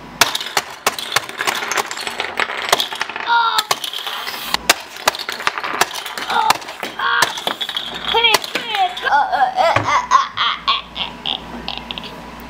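Quick, irregular clicks and clatter of Micro Drifters toy cars being fired from a rapid-fire launcher and knocking into a plastic playset, mixed with laughter and playful voice noises.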